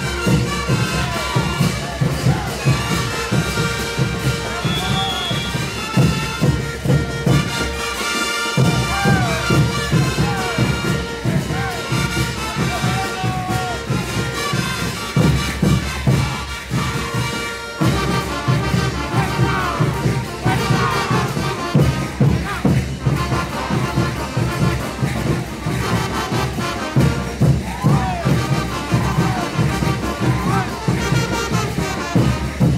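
Live brass band with bass drums playing caporales music, with a steady driving drum beat under sustained brass lines. The drums drop out briefly twice.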